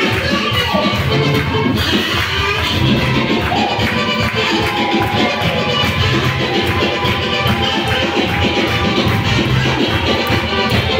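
Loud gospel praise music with a steady beat and singing, with hands clapping along.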